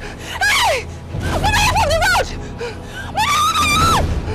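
A person's high-pitched screams in distress: three cries with sliding pitch, the last one held.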